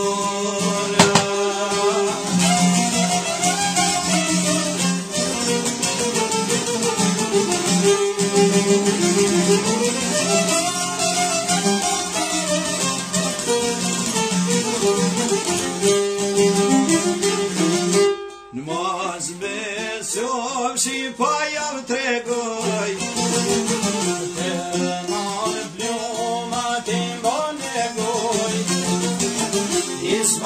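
Albanian folk song: singing over plucked string accompaniment, with a brief break about two-thirds of the way through before the music carries on.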